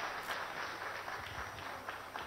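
Audience applauding: many hands clapping together in a steady patter that eases slightly toward the end.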